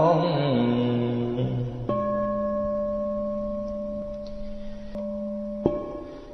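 A chanting voice holds and lets fall the last syllable of a sung Buddhist repentance verse. An accompanying instrument then holds a steady chord for about four seconds, which cuts off abruptly shortly before the next line begins.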